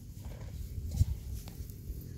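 Handling noise while cooking: one dull knock about a second in, over a steady low rumble.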